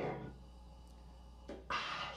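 A quiet lull with a low steady hum, broken near the end by a short breathy burst as a woman starts to laugh.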